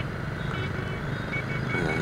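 Steady noise of dense motorbike traffic heard from a moving motorbike, engines and tyres blended with wind. A few faint short high beeps come in the second half.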